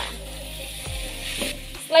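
Mandai (fermented jackfruit skin) sizzling in a wok as it is stir-fried, with a few light scrapes of a metal spatula against the pan.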